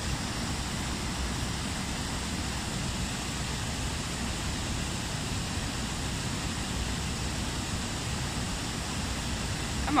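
Steady, even rush of a small waterfall and the flowing river water around it.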